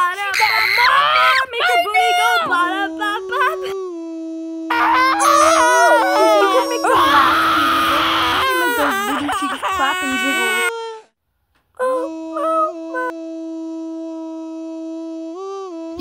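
A person's voice making wordless, drawn-out sung or wailing sounds, some notes bending and others held long and steady. It cuts out abruptly for under a second about eleven seconds in, then returns with a long, level held note.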